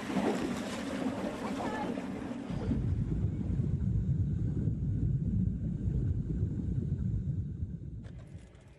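Wind and water noise on a boat at sea. A loud low rumble sets in abruptly about two and a half seconds in.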